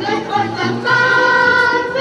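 Music with a choir singing over a bass line; about halfway through the voices hold one long chord.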